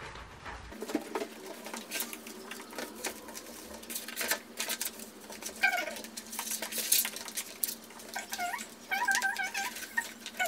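Plastic frosted window film crackling and rustling as it is unrolled and pressed onto window glass by hand, with a few short, wavering squeaks in the last two seconds.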